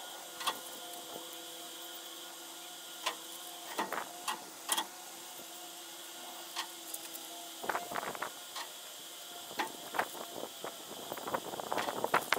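A steady background hum with a few faint steady tones, under scattered sharp clicks and knocks that come thicker about two thirds of the way through and again near the end.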